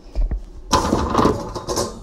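Handling noise as a plastic tub of cookie dough is picked up and carried, with a couple of soft thumps and then about a second of rustling, scraping noise.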